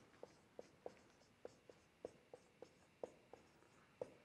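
Marker pen writing on a whiteboard: faint, short, irregular strokes of the tip as letters are formed, about a dozen in four seconds.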